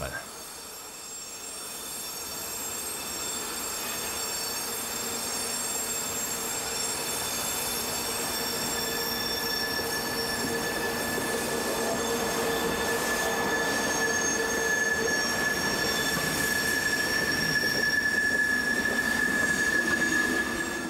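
A DB class 110 electric locomotive and its train of Silberling coaches rolling slowly past on curved track, growing louder as it nears, with a steady high wheel squeal setting in about eight seconds in.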